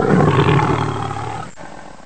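Lion roar sound effect trailing off and fading out.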